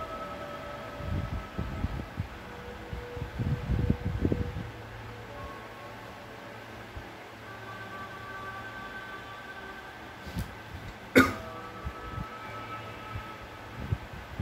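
A person coughing and clearing the throat in two short, muffled bouts in the first half, then a single sharp click about three seconds before the end.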